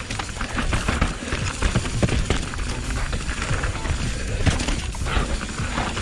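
Mountain bike ridden downhill over rough, rooty and rocky dirt singletrack: a constant clatter of tyres knocking over roots and rocks and the bike rattling, over a steady low rumble.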